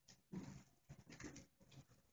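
Faint, indistinct speech of a man at a podium, picked up from across the room in short broken phrases.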